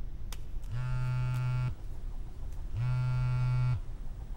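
A mobile phone buzzing for an incoming call: two identical one-second buzzes, two seconds apart.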